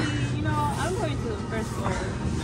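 Quiet background talking over a steady low hum of indoor store ambience.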